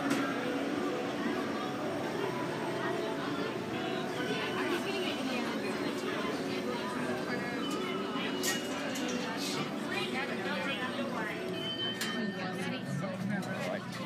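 Indistinct voices of several people talking, steady throughout, with a few sharp knocks in the second half.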